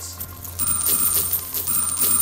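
Many game-show counters clattering as they spill over the shelf edge and drop into the tray, a dense run of clicks starting about half a second in. A steady musical sound effect plays along with it.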